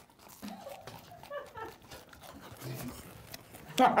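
Faint, muffled mouth and voice sounds, like someone making noises with a full mouth. A burst of laughter breaks out near the end.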